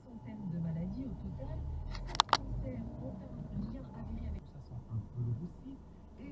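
Low car-cabin rumble from the engine and road under faint talk, with two sharp clicks in quick succession about two seconds in.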